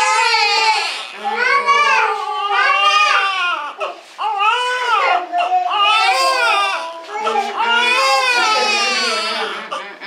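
An infant crying loudly and without letup in long high-pitched cries, catching its breath briefly about a second in and again around four and seven seconds in, while its leg is being plaster-cast.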